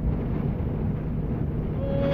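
Steady engine drone heard inside a truck cab while driving in a heavy rainstorm, with the hiss of rain and wet road noise over it.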